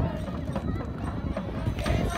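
A group of voices singing together, with a rhythmic knocking beat of claps or steps under it.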